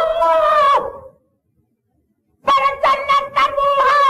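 Male voice singing a Sindhi maulood (devotional song) in long, high, wavering held notes, with no instruments heard. It breaks off about a second in, is silent for over a second, then comes back with a few short broken notes before holding a long note again.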